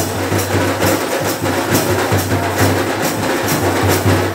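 Drum-led percussion music with a steady beat of about two strokes a second: sharp high strikes on each beat over a deep pulsing drum.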